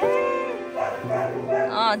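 A dog whining in short, high, wavering cries, over soft background piano music; a man's brief sigh-like 'ai' comes at the start.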